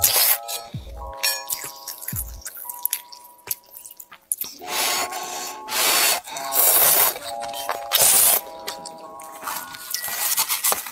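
Noodles being slurped from a bowl of soup in several loud, noisy gulps in the second half, over background music with held tones.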